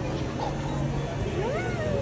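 A small child's high voice, one drawn-out call that rises and then falls in pitch about a second and a half in, over a steady hum of background crowd noise.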